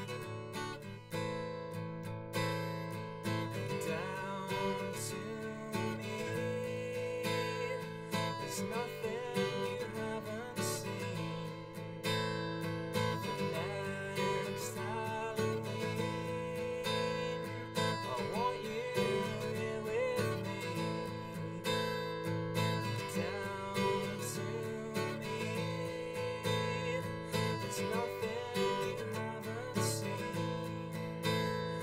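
Acoustic guitar strummed steadily, with a man singing over it: a solo singer-songwriter performing a song.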